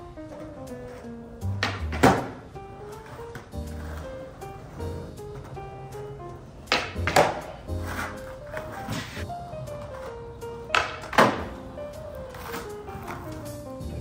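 Skateboard kickflips on flat concrete, three of them, each a sharp pop of the tail followed by the clack of the board landing, over background music.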